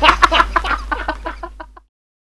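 A man laughing hard in rapid, repeated bursts that fade away and cut off abruptly near the end, over a low steady hum.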